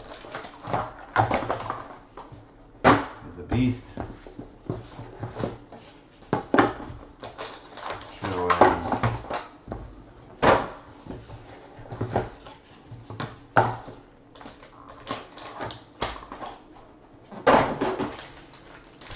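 Foil trading-card packs being ripped open and crinkled by hand, with cards handled and set down on a table: an uneven run of sharp crackles, rustles and clicks.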